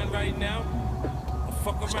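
A low steady rumble of outdoor background noise, with a faint voice under it.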